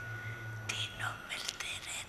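Faint, hushed talking close to a whisper, over a low hum and a thin steady tone that stop about halfway through.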